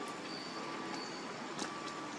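Steady outdoor background noise, with two faint brief high whistles early in the first second and a soft click about one and a half seconds in.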